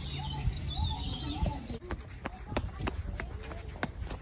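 Birds calling, a string of short repeated chirps in the first half, with scattered sharp taps and ticks through the second half.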